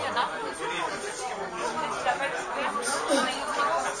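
Several people talking at once in a room: audience chatter between songs, with no music playing.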